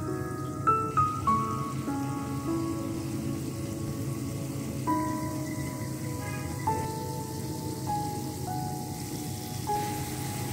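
Potato samosa rolls sizzling as they deep-fry in moderately hot oil in a wok, under soft background music: a slow melody of single held notes.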